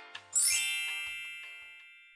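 A bright sparkling chime sting for an intro logo: after a few short musical notes, a shimmering ding strikes about half a second in and rings out, fading over about a second and a half.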